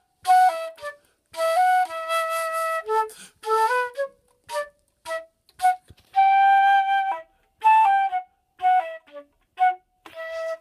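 Flute playing a study passage: phrases of short, detached notes broken by brief silences, with a few notes held for about a second.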